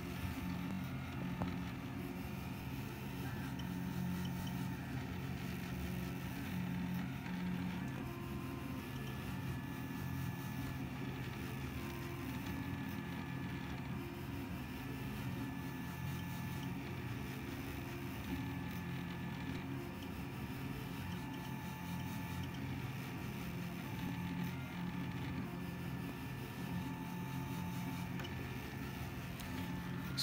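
Delta 3D printer printing, its stepper motors whining in short tones of shifting pitch that come and go as the effector moves, over a steady fan hum. The motors are driven by an Arduino Due on a hacked RAMPS 1.4 board, and the printer runs quietly.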